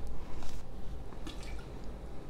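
Fresh lion's mane mushroom being torn apart by hand: soft tearing, with short faint crackles about half a second and about a second and a half in.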